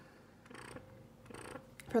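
Medela Freestyle Flex portable breast pump running faintly, a quiet steady hum with a few soft mechanical ticks.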